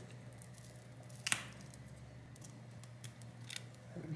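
Small handling clicks from a tablet display's flex-cable connector being pried up and lifted free: one sharp click a little over a second in, then a few faint ticks, over a faint low hum.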